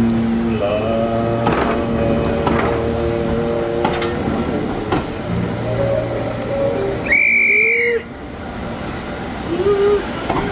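Heritage railway coaches rolling past along the platform, with whistling: steady held pitched tones over the first few seconds and a loud, shrill high whistle about seven seconds in that cuts off sharply a second later.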